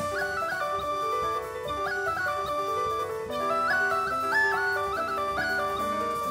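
Music: a flute plays a melody that steps quickly up and down, over piano and a drum kit.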